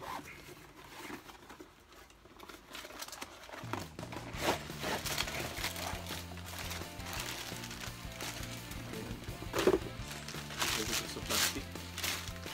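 Plastic packaging crinkling and a cardboard box being handled in short, irregular rustles. Background music with a steady bass line comes in about four seconds in.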